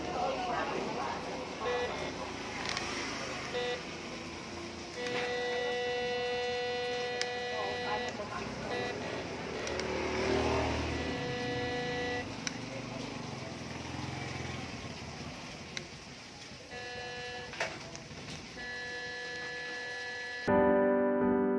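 MD-3028 metal detector's speaker giving a couple of short beeps, then several held electronic tones lasting one to three seconds each, while its keypad buttons are worked.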